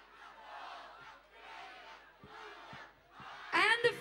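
A crowd counting down aloud together, one count roughly every second, the many voices blurred into a haze. Near the end a single man's voice comes in, loud and clear.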